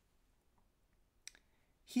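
Near silence with a single brief click a little past halfway, then speech begins just before the end.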